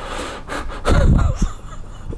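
A man laughing in breathy bursts, loudest about a second in.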